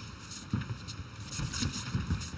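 Scattered dull thumps and shuffling from a kickboxing bout in progress, over steady arena noise.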